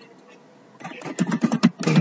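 Quiet for almost a second, then a man talking, over the clicks of computer keyboard keys being typed.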